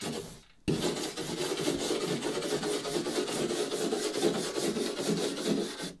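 Stainless steel wire brush scrubbing back and forth over the varnished wood of a canoe hull in quick, even strokes, starting just under a second in. The brush is lifting loose, flaking varnish out of fine cracks in the weathered grain before revarnishing.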